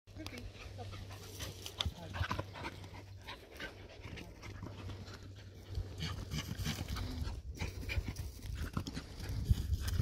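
A litter of puppies and an adult dog running over dry forest floor: many quick rustles and crackles of paws in leaf litter and twigs, with dogs panting.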